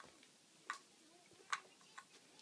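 Two light clicks of large plastic toy building blocks knocking together, less than a second apart, in a quiet room.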